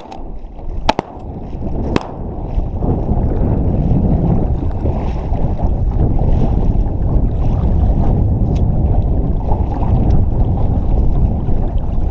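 Shotgun shots about a second apart in the first two seconds, then a steady low rush of wind and choppy water lapping around a layout boat, heard on an action camera's microphone.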